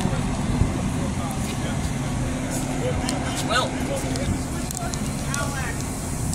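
Metra diesel-hauled commuter train standing at the platform, giving a steady low engine hum.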